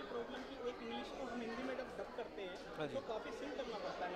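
Background chatter: several people talking at once, no single voice standing out.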